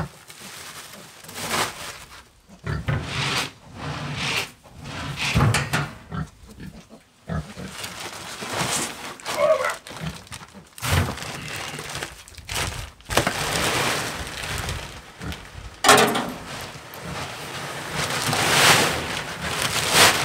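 Pigs grunting close by while dry feed is poured from a sack into a wooden bin. The grain rushes out in longer bursts, the loudest near the end.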